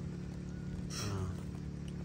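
A steady low mechanical hum, one even drone with many overtones that runs on without change.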